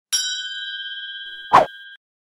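Notification-bell 'ding' sound effect ringing and slowly fading. A short, sharp hit about a second and a half in is the loudest moment.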